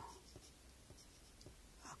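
Faint scratching of a pencil writing figures on a sheet of paper.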